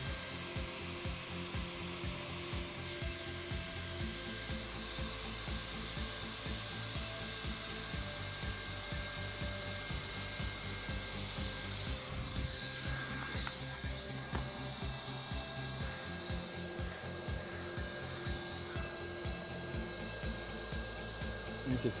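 Hot-air plastic welding gun blowing steadily as its speed-welding tip is drawn along a floor-sheet seam, with the weld rod rubbing and dragging through the tip.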